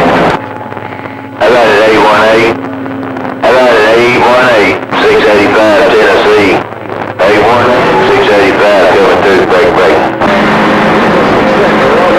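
CB radio receiving garbled, distorted voices from distant stations through its speaker, with static and a steady hum tone underneath. The signal cuts away briefly three times between transmissions.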